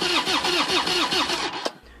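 Electric starter cranking a Harley-Davidson V-twin in a fast, even chug of about six or seven pulses a second, the engine not firing; the cranking stops with a click near the end. A cold, hard-to-start engine.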